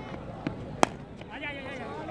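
A cork cricket ball struck by a bat: one sharp crack about a second in, after a fainter knock. Voices call out right after.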